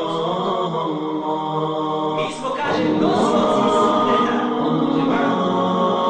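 An unaccompanied nasheed-style vocal chant: several voices holding long sung notes in layers, with no instruments. About two and a half seconds in, the singing grows fuller and louder.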